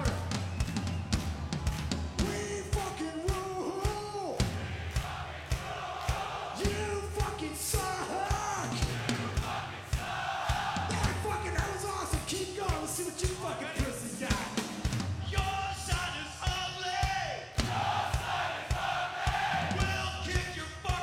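Live hard-rock band playing a steady drum beat with bass, while a large concert crowd yells and sings along.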